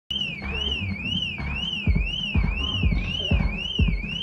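Siren wail sweeping evenly up and down about twice a second. A dance-music kick drum thumps about twice a second from about two seconds in.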